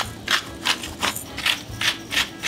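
Hand-twisted spice mill grinding seasoning over a bowl, a quick rhythmic rasping of about three grinding strokes a second, six in all.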